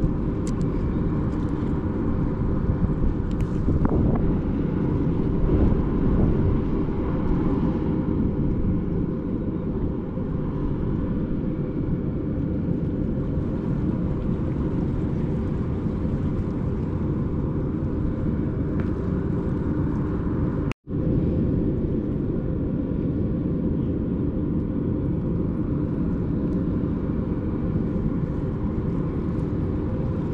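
Wind buffeting the microphone: a steady low rumble, broken by a brief complete dropout about two-thirds of the way through.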